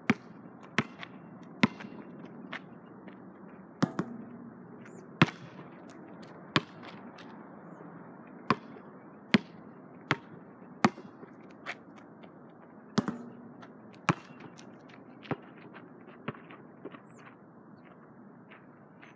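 A basketball bouncing on an asphalt court: sharp slaps at uneven intervals, roughly one a second, some much louder than others.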